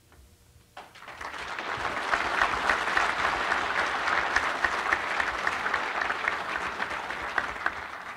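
Audience applauding, starting about a second in, swelling quickly and dying away near the end.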